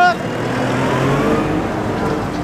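Farm tractor driving past close by, its diesel engine running steadily with a slight rise in pitch about a second in.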